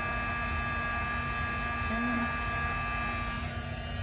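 Embossing heat tool running steadily, its fan blowing hot air with a constant whining hum while it melts white embossing powder on cardstock.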